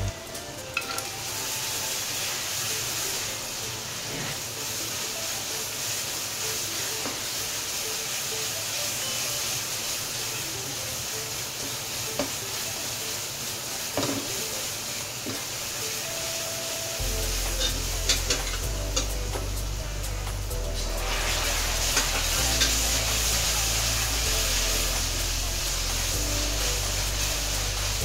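Tomato masala sizzling in an aluminium kadai while a spatula stirs and scrapes through it, with a few sharp clicks of the spatula against the pan. Background music comes in with a deep bass about two-thirds of the way in.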